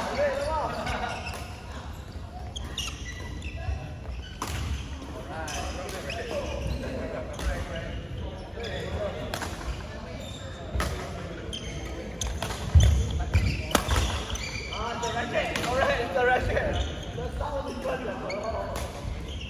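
Badminton rackets striking a shuttlecock during a doubles rally, sharp cracks every second or two, echoing in a large sports hall. A heavy thud about two-thirds of the way through is the loudest sound, and voices can be heard in the hall.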